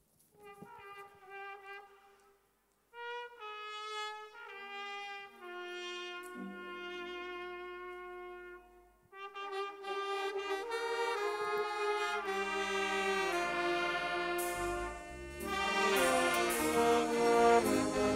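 Church brass band of saxophones, trumpets, trombones and a tuba-type horn playing a tune. It starts softly with a few players; the fuller band comes in about ten seconds in and grows louder, with low bass notes near the end.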